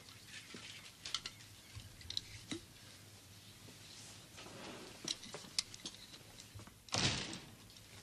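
Quiet room with light footsteps and scattered small clicks and knocks, then one short, louder knock about seven seconds in, like a door or window catch.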